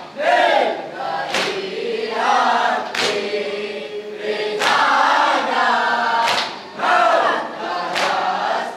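A group of men chanting a noha, the Muharram mourning lament, in unison through a microphone. Their chant is punctuated by sharp, evenly spaced strikes of unison chest-beating (matam), about one every one and a half seconds.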